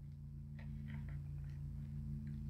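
Faint rustle and soft taps of a board-book page being turned, about half a second to a second in, over a low steady hum.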